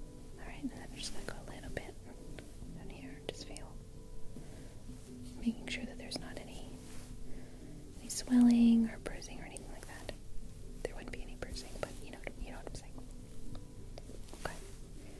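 Soft, close-up ASMR whispering with light clicks and handling noises near the microphone. A short, louder voiced sound comes about eight seconds in.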